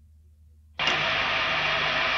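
Faint low hum of the gap between tracks on a punk compilation cassette, then a little under a second in, a sudden loud, steady hiss-like noise cuts in as the next track begins.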